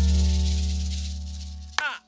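Latin jazz band's held chord, electric bass and keyboard, ringing out and fading away over about a second and a half. Just before the end, sharp hand-percussion strikes begin, starting the next rhythmic passage.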